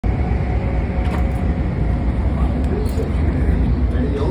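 Steady low rumble of a Long Island Rail Road electric commuter train, heard from inside the car at the doors, with faint voices in the background.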